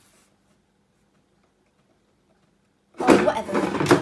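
Near silence with a faint steady hum for about three seconds, then a sudden loud burst of rustling, handling noise lasting about a second, typical of a phone being picked up and moved against its microphone.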